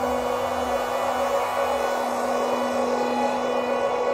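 Slow ambient synthesizer music: a sustained drone with one steady held note, over low tones that slide downward and die away about two seconds in.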